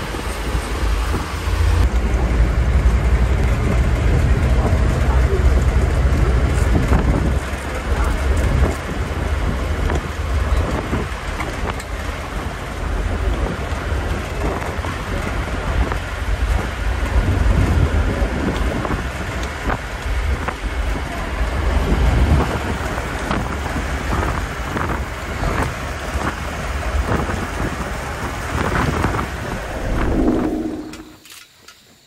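Open-sided safari bus moving along a forest track: a steady low engine rumble with wind noise through the open sides. Short knocks and rattles come through in the second half.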